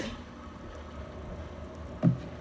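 Low steady background hum with faint hiss in a pause between words.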